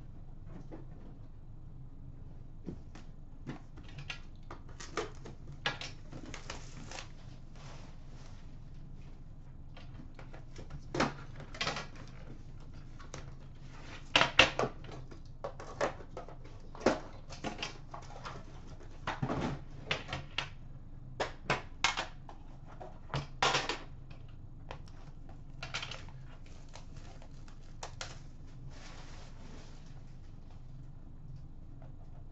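Irregular clicks, taps and knocks of a metal hockey-card tin being handled and opened by hand, with the loudest knocks about halfway through and again later on. A steady low hum runs underneath.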